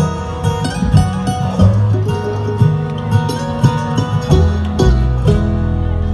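Live bluegrass band playing an instrumental break between sung verses: banjo and acoustic guitar picking over an upright bass line, with mandolin and fiddle on stage.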